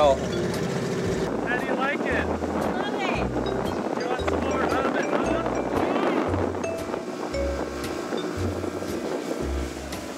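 Background music with a steady bass beat, pulsing about every 0.7 seconds, with melodic lines over it.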